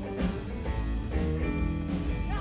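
Live blues band playing: electric guitar over bass and a drum kit, with steady drum hits through the passage.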